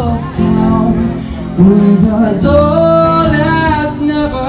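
Live acoustic band music: a male voice singing over acoustic guitars.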